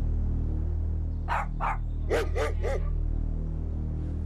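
A dog barking five times in two short runs, two barks and then three quicker ones.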